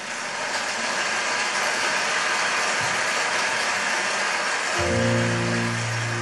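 Audience applauding in a large concert hall. Near the end, the song's instrumental introduction comes in with long, held notes.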